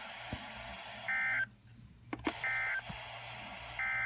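NOAA Weather Radio SAME end-of-message data bursts through a Midland weather alert radio's speaker: three short buzzy digital bursts about a second and a half apart over steady radio hiss, marking the end of the warning broadcast. Between the first two bursts the hiss drops out briefly and there are a couple of clicks.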